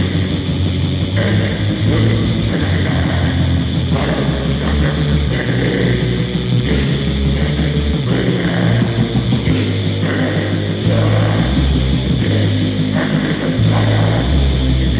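Heavy metal band playing a loud, distorted riff: electric guitar and bass with low notes changing every second or two.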